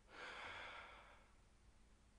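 A single breathy sigh lasting about a second, then near silence.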